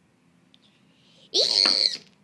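A high-pitched voice shrieks a short, rising 'Yee!' about a second and a half in, lasting just over half a second.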